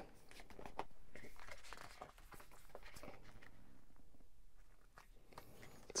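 Faint rustle of a large book's pages being handled, turned and smoothed flat by hand, in two soft stretches with a few light ticks.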